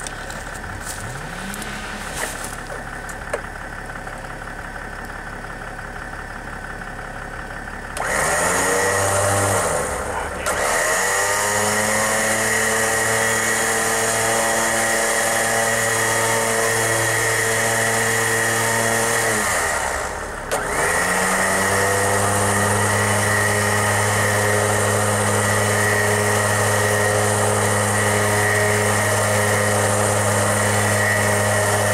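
Badland 12,000 lb electric winch motor starting about eight seconds in with a rising whine as it spins up, then running steadily under load as it drags a log. It cuts out about twenty seconds in and starts again. A pickup truck engine idles underneath throughout.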